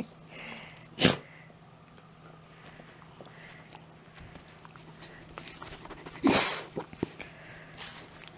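Miniature schnauzer sniffing and snuffling right at the microphone, with two louder sniffs, one about a second in and a longer one about six seconds in.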